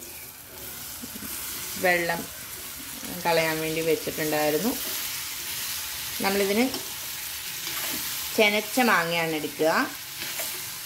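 Cubed ripe mango sizzling steadily in hot coconut oil with spices in a pan as it is tipped in and stirred. A person's voice breaks in at intervals with short drawn-out sounds, louder than the sizzle.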